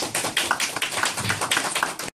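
Audience applauding, many separate hand claps close together.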